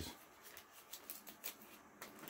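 Faint rustling with a few light ticks as a comic book is picked up and handled.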